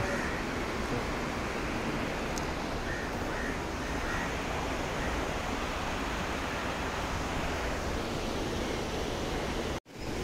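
Steady rushing noise of a river flowing over rapids, even throughout, cutting off suddenly just before the end.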